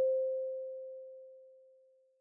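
A single pure, mid-pitched chime tone ringing out from one stroke and fading away steadily, almost gone by the end: a title-card sound effect.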